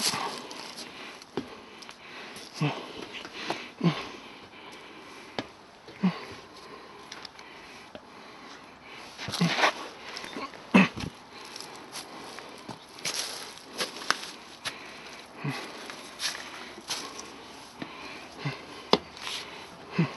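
Footsteps of someone climbing a steep path, crunching on dry leaf litter and rock and stepping onto metal-grate steps, as irregular knocks and rustles about once a second, with the climber's breathing and a short 'mm, mm' murmur near the start.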